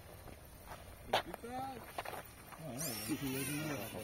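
People talking and laughing, with one sharp knock about a second in.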